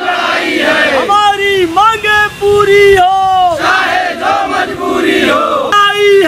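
A crowd of protesters shouting slogans together, loud short phrases following one after another.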